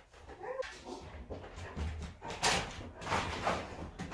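A dog moving about a room, with two short rustling noises in the second half, the louder one about halfway through.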